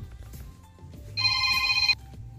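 A ringtone-like electronic tone, several steady pitches sounding together, comes in about a second in, lasts under a second, and cuts off abruptly.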